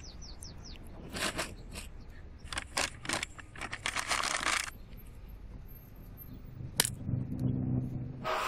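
Paper crinkling and rustling in quick handfuls as crumpled white paper and a brown paper bag are handled on the pavement. A single sharp click comes near the end, and a low hum starts just after it.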